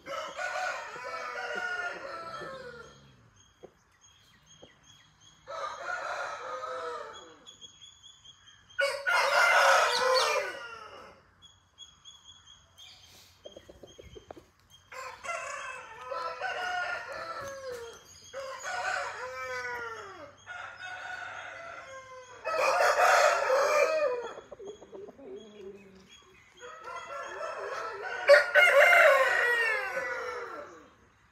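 Aseel roosters crowing again and again, about eight long crows spread through with short quiet gaps between them. The loudest crows come about ten seconds in and near the end.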